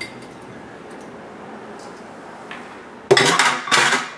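A quiet stretch of faint handling noise. About three seconds in, two short, loud clattering knocks and scrapes follow as a glass jar and a bowl are handled on the kitchen counter.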